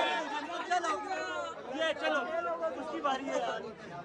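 Several young men's voices talking over one another in lively group chatter.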